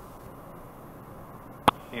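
Steady hiss on the cockpit headset and intercom audio, between radio calls. About a second and a half in comes one sharp click as the push-to-talk is keyed for the next transmission.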